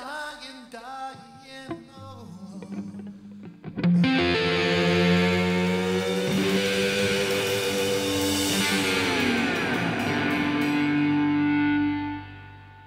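Rock band playing live with distorted electric guitar: a few quieter, sparse notes, then about four seconds in a loud chord struck and held, gliding down in pitch near the ten-second mark and ringing on as the song's closing chord.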